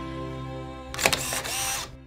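A song's closing chord held under a camera shutter sound effect: about a second in, a sharp click followed by a brief rasping burst, lasting under a second, after which the music drops away.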